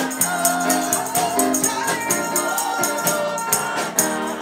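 Live gospel worship music: a woman singing lead into a microphone over held keyboard chords and a steady jingling percussion beat, with the congregation singing along.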